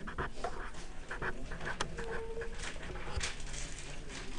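Felt-tip marker writing on a pad of paper: a run of short, irregular scratchy strokes as the words are written out.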